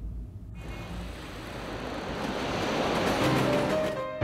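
Dramatic background score: a low rumble dies away, then a whooshing noise swell builds steadily louder, with a held note entering near the end as a transition.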